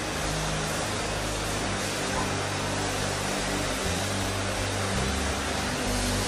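Soft, sustained low keyboard chords changing every second or two, under a steady wash of a congregation praying aloud together.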